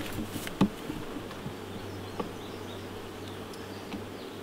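Honey bees buzzing around an open hive, a steady hum. A few light knocks come from the wooden frames being handled, near the start and about two seconds in.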